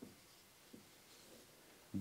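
Faint strokes of a marker pen on a whiteboard as a word is written, in a small quiet room.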